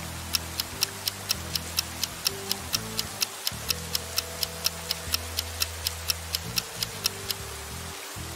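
Countdown timer sound effect: sharp clock-like ticks, about four a second, over soft background music with long held low notes. The ticking stops about a second before the end.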